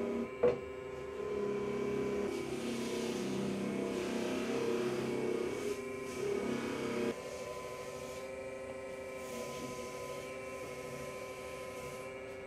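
Dental polishing lathe running with a steady motor hum while a rag wheel polishes a flexible nylon partial denture with pumice. There is a short click about half a second in, and the sound drops to a quieter, steadier hum about seven seconds in.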